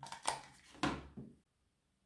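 Four light knocks and clicks in the first second and a half, then silence.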